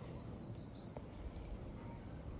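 Faint steady background hiss in a pause between spoken sentences, with a quick run of faint, high chirps in the first second.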